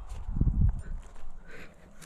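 Muffled low rubbing and bumping of a climber's body and jacket moving close to the camera's microphone while hand-jamming a granite crack, loudest about half a second in, with a few faint light clicks.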